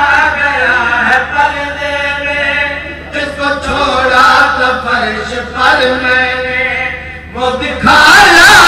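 A man's voice chanting a melodic recitation through a microphone and loudspeaker, over a steady low hum.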